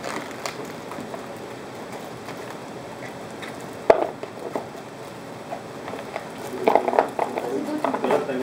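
Plastic bag of baby carrots crinkling as it is handled over a plastic colander, with one sharp knock about four seconds in, then carrots tumbling from the bag into the colander near the end.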